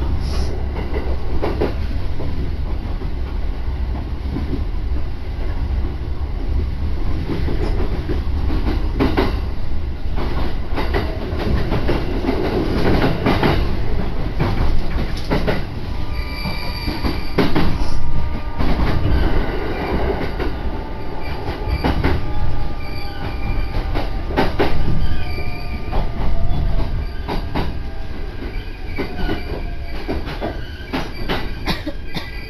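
Local electric train heard from inside the car: steady rumble with irregular clicks of the wheels over rail joints. From about halfway, high steady whines join in along with a tone that slowly falls in pitch as the train brakes into the station.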